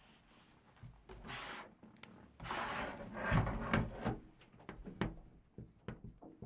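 Rubbing and scraping of a small whiteboard handled on a wooden desk and written on with a marker. The loudest scraping comes a little under halfway through, and there is a short sharp knock about a second before the end.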